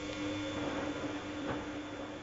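Bosch Logixx WFT2800 washer dryer's drum motor turning the drum in a wash tumble: a steady motor hum, with one light knock about one and a half seconds in.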